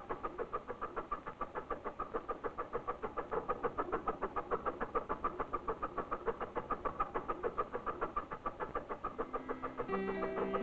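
A small ferry's engine chugging steadily, about six or seven beats a second.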